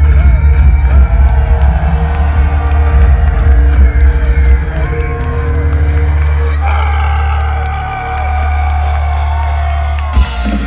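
Folk metal band playing live, heard loud from within the audience. The fast drumming gives way around the middle to a held chord with a high wash over it.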